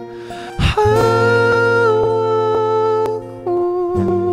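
A male voice holding long wordless sung notes over soft acoustic guitar strumming, with a quick breath about half a second in and a step down in pitch shortly before the end.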